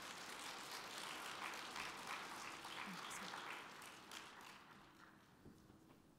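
Audience applauding, strongest in the first few seconds and fading out about five seconds in.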